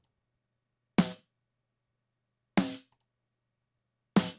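Soloed snare drum track playing back: two snare hits about a second and a half apart, with silence between. The snare runs through an analog tape simulator set very low, adding a little sizzle to the snare-wire high end.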